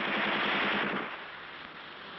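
A rapid rattle of sharp bangs, like automatic gunfire, for about the first second, then a fainter rushing noise.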